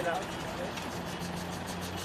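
Steady low hum of an idling vehicle engine that grows stronger about a second in, under faint outdoor street noise.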